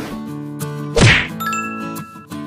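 Subscribe-button sound effect over strummed acoustic-guitar background music: one loud sharp hit about halfway through, falling in pitch, then a short bright bell ding that rings on for under a second.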